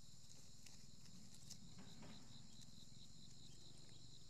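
Faint, steady insect chorus with an even, pulsing high buzz, and a soft rustle of leaves being handled about two seconds in.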